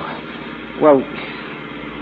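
Radio-drama sound effect of a car running, a steady even noise without rhythm under a man's single hesitant "well" about a second in.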